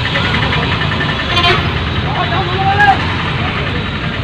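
Auto-rickshaw's small engine running steadily with a continuous low rumble, heard from inside the open passenger cabin while it drives through town traffic.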